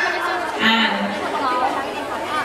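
Speech: people talking, with overlapping chatter in a large hall.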